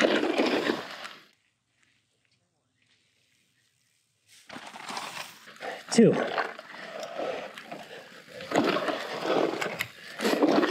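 Riding noise from a mountain bike going down a dirt jump line: wind rushing over the camera microphone with tyres running on dirt. It cuts to silence about a second in and returns about three seconds later, and the rider whoops after clearing a jump.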